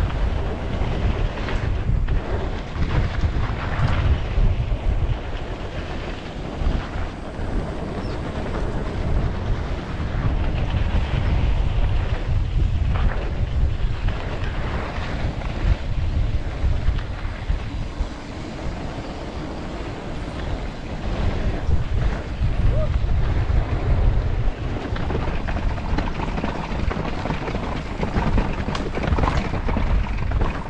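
Wind buffeting the microphone of a camera on a moving mountain bike, over the steady rumble and rattle of knobbly tyres rolling on a dirt trail. The noise swells and eases with the riding speed.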